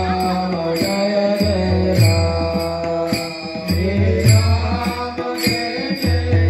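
A group of voices singing a devotional bhajan in chorus, kept in time by small hand cymbals (taal) struck steadily, with deep beats from a barrel drum (pakhawaj).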